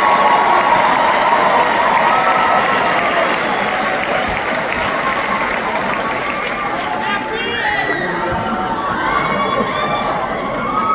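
Theater audience cheering and applauding, many voices and hands at once. It is loudest in the first few seconds, eases slightly, and has separate rising whoops and shouts near the end.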